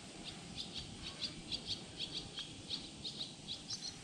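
A small bird chirping over and over: short, high chirps, some in quick pairs, about three a second.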